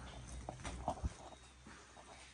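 Footsteps over debris-strewn floor, a few irregular sharp knocks and crunches in the first second and a half, then fading.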